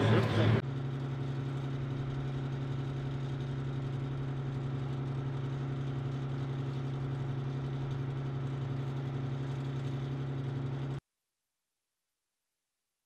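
Armored robotic combat vehicle's engine idling with a steady, even hum, which stops abruptly shortly before the end.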